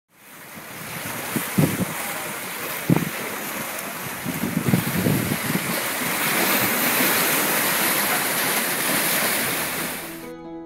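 Lake waves breaking and splashing against a rocky shore, with wind rushing over the microphone. A few heavier thumps come in the first half.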